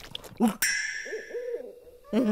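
A quick run of short, soft hooting sounds, about five a second, under a bright shimmering chime that comes in about half a second in and fades away.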